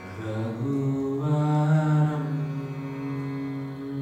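A low voice chanting a mantra: one long held, drawn-out note that swells in during the first second and is loudest about two seconds in.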